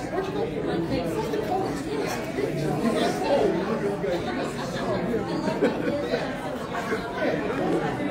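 Indistinct chatter of several people talking at once in a large room, no single voice standing out.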